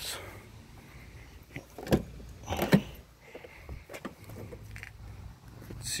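Latch clicks and a jangle of keys as a Jeep Wrangler's rear swing gate and the lockable Tuffy Security Deck storage box behind it are opened. There are a few sharp clicks, the loudest a little under three seconds in.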